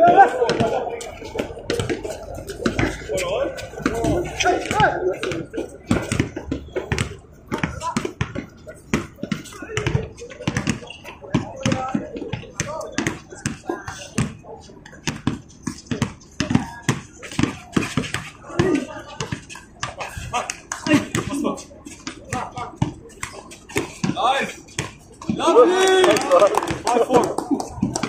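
A basketball bouncing and being dribbled on a hard court, many short sharp thuds through the whole stretch, mixed with players' voices that grow louder near the end.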